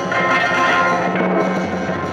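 Live band music, with acoustic guitar and a drum kit playing over sustained held notes.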